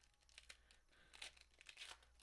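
A foil Pokémon trading-card booster pack wrapper being torn open and crinkled by hand, faint, with two louder rips in the second half; the pack is tightly sealed.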